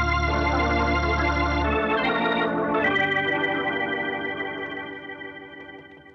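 Organ music bridge marking a scene change in an old radio drama: a few held chords over a deep bass, the chord shifting about two seconds in, then the last chord slowly fading away.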